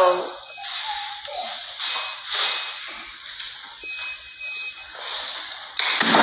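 Faint, indistinct voice sounds and rustling handling noise on a phone's microphone. A sudden louder rush of noise comes just before the end.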